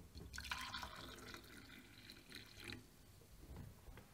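Black coffee being poured from a stainless steel saucepan into a glass mug, a splashing trickle that starts shortly after the beginning and stops at about three seconds.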